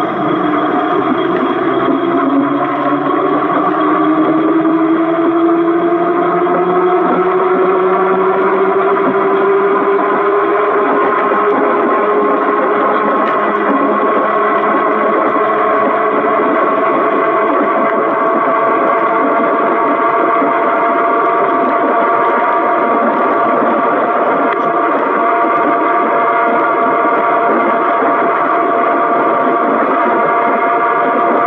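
Fiido M21 fat-tyre e-bike riding fast: a whine from the hub motor and tyres rises in pitch over the first ten seconds or so as the bike picks up speed, then holds steady over road noise.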